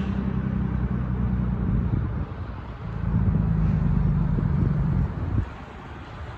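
Truck engine running with a steady low hum. It grows louder about three seconds in, then drops away just after five seconds.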